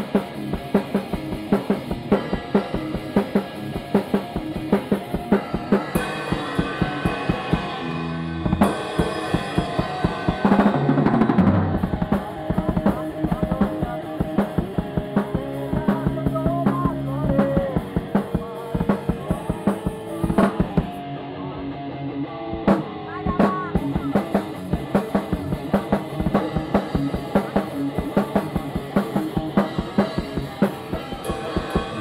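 Heavy metal jam: a drum kit played hard and fast, with rapid kick-drum and snare hits throughout, under an electric guitar riff. The guitar holds longer notes in the middle.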